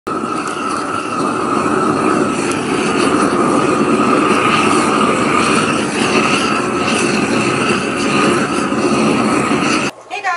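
Propane weed-burning torch running: a steady, loud rush of flame that stops suddenly near the end.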